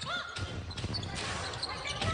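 A basketball being dribbled on a hardwood court.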